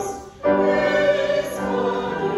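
A woman singing a hymn with piano accompaniment: a brief pause near the start, then long held notes.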